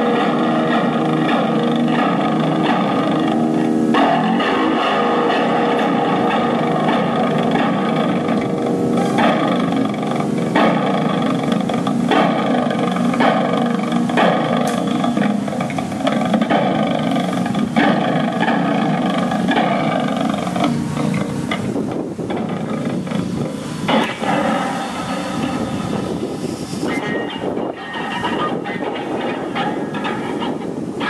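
Electric guitar, a Fender Telecaster through a small Fender Champ tube amp, played as free improvisation: a dense, sustained wash of held notes and chords that turns rougher and noisier about two-thirds of the way through.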